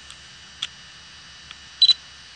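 Short electronic beeps over a steady hiss with a faint high whine: a small click about half a second in, a fainter one later, and a louder double beep near the end.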